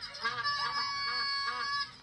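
Quick repeated rising-and-falling vocal calls, about four a second, honking in tone.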